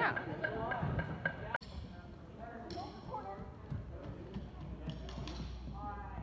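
Voices and chatter echoing in a large gymnasium, with a few scattered light taps and thuds from people moving about the floor. A close voice cuts off suddenly about a second and a half in, leaving the quieter, reverberant hall sound.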